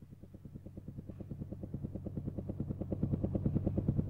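Karaoke backing-track intro: a fast, even, chugging pulse over a low hum, fading in and growing steadily louder.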